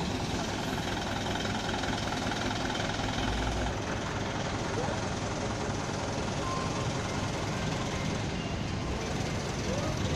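Steady street noise with a vehicle engine running, and faint voices.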